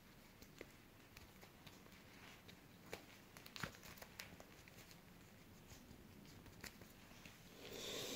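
Near silence with a few faint clicks and rustles, the clearest about three and a half seconds in: a leather-strapped watch being handled and buckled onto the wrist.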